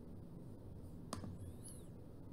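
Faint low room noise with a single sharp click about a second in, followed by a brief, faint high chirp.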